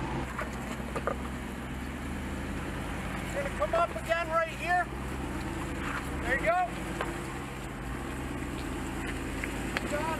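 Jeep Wrangler Willys crawling slowly over rough, overgrown ground, its engine running at low revs with a steady low hum. A voice calls out briefly twice, about four and six and a half seconds in.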